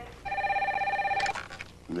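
A landline telephone rings once, a single ring of about a second, ending with a short click.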